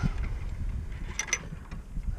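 Wind buffeting the microphone as a low rumble, with two short clicks a little past a second in.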